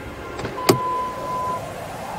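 3D printing pen: a click of its button, then its filament feed motor whining steadily for about a second.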